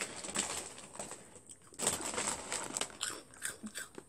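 Crunchy Flamin' Hot Cheetos being bitten and chewed close to the microphone: irregular crunches in clusters, loudest about two seconds in.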